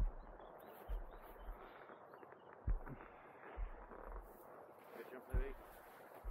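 Outdoor mountain ambience on a helmet camera: short low rumbles of wind on the microphone every second or so, with a few soft knocks. A faint distant voice comes in near the end.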